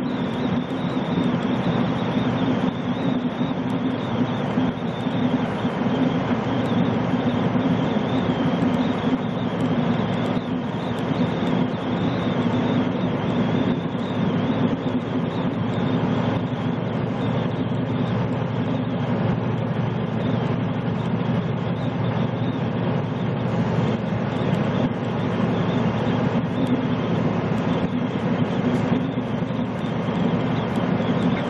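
Steady drone of a semi truck cruising at highway speed, heard from inside the cab: diesel engine hum mixed with tyre and road noise.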